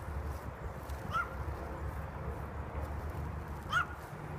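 Two short, high calls from an animal, one about a second in and one near the end, over a steady low rumble.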